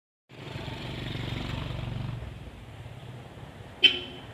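A motor vehicle's engine runs nearby with a low, pulsing rumble that fades after about two seconds. Near the end comes one sharp, loud clink as the glass bottle is knocked on the table.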